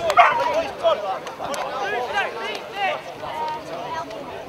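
Footballers shouting in celebration of a goal, loudest right at the start, followed by a run of short, high yelping calls about two to three seconds in.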